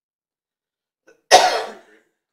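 A single loud cough, sudden and fading out within about half a second, a little past the middle.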